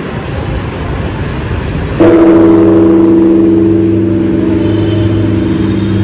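Large bronze Buddhist temple bell struck once about two seconds in, ringing with a deep hum of several steady tones that slowly fades. Before the strike there is a low rumble.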